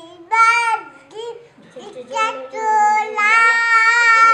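A young girl singing a few high, sung phrases, the later notes long and held.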